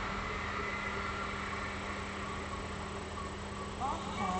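Steady low room noise with a constant hum. Near the end a short, wavering high-pitched call begins.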